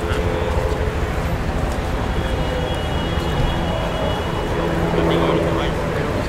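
Busy city street ambience: a steady rumble of traffic under the voices of passers-by talking, with a thin high whine for a couple of seconds in the middle.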